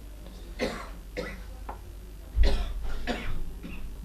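A person coughing several times in short, noisy bursts, the loudest about two and a half seconds in.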